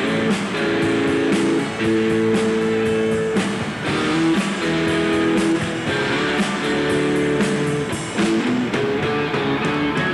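Live rock band playing an instrumental passage with no vocals: guitar holding long notes over drums keeping a steady beat.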